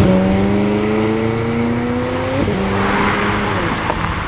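McLaren 600LT's twin-turbo V8 through a Fi exhaust, accelerating hard away. The pitch climbs steadily, drops sharply at upshifts right at the start and about two and a half seconds in, then holds and fades near the end as the car pulls away.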